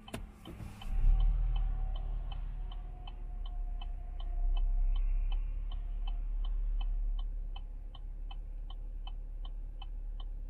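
A car's turn-signal indicator clicking steadily inside the cabin, about three clicks a second, while the car waits at a light. Under it is the low rumble of cross traffic passing in front, loudest about a second in and again around the middle.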